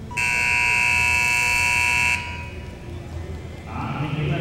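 Arena buzzer sounding once for about two seconds, a loud steady electronic tone that cuts off suddenly: the horn that ends a cutting horse run's time.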